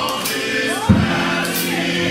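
Men's gospel choir singing in harmony with keyboard accompaniment; a strong low note comes in about a second in.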